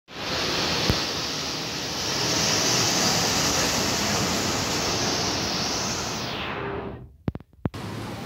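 Loud, steady rushing noise, like wind buffeting the microphone, with no clear engine note. It fades and cuts out abruptly about seven seconds in, followed by a few sharp clicks.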